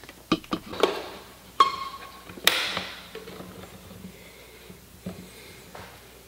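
Several sharp plastic clicks and knocks as RJ45 ethernet cable plugs are handled and pushed into their jacks. A brief tone comes about a second and a half in, then one loud clack a moment later.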